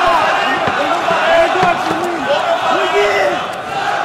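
Large arena crowd shouting and chanting during a fight, in drawn-out calls that rise and fall in pitch. The level dips briefly near the end.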